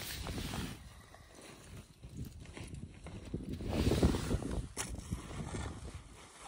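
Handling noise: jacket fabric rubbing and brushing over the phone's microphone as it is moved, with low, irregular rumbling that swells near the start and again about four seconds in.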